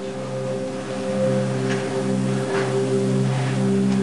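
Background music: soft sustained chords held steady, with no beat.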